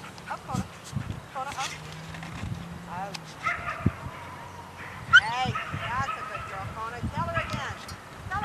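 Puppies yipping and barking as they play, with a drawn-out high whine partway through and a quick run of yips in the second half.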